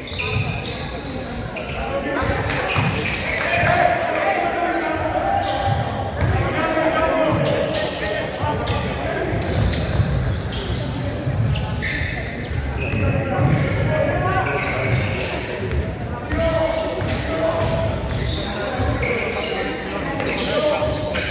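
A basketball bouncing on the court amid players' and spectators' voices calling out, all echoing in a large sports hall.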